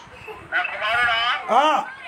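A man's voice preaching: after a brief pause, one long wavering drawn-out syllable, then a short syllable that rises and falls in pitch.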